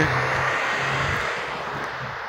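Road traffic: a passing vehicle's steady rush of tyre and engine noise, slowly fading.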